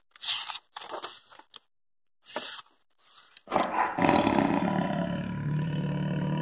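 A few short rustles of a hardback picture book being handled and closed, then, about three and a half seconds in, a long, loud tiger roar sound effect begins.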